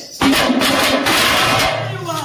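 Fast, loud drumming on large double-headed drums beaten with sticks. It starts just after the beginning and breaks off near the end, where a steady low drone comes back in.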